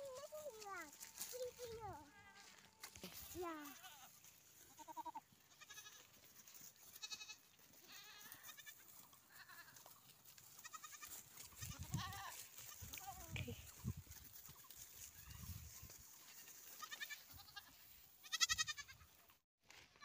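Goats bleating now and then: several short calls with a wavering pitch, the loudest about a second and a half before the end.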